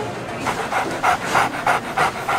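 A small dog panting quickly, about three short breaths a second.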